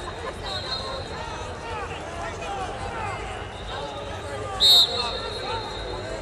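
A referee's whistle blown once, a short sharp blast about four and a half seconds in, marking a stop in the wrestling. It sounds over a steady babble of many voices from coaches and spectators in the arena.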